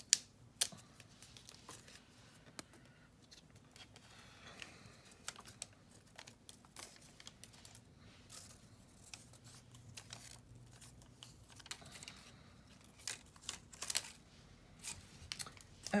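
Light, scattered clicks and taps of paper cut-outs and clear plastic being handled on a craft mat, with a sharper click right at the start and a short flurry near the end.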